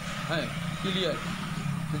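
A man's voice in short fragments over a steady low hum that runs without a break.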